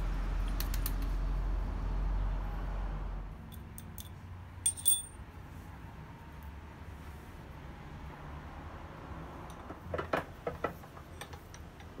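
Small pieces of tool steel clinking against a stainless steel tube and a steel block as they are loaded into the tube. There are scattered light metallic clicks, a brief cluster with a short high ring about five seconds in, and a few more taps near the end.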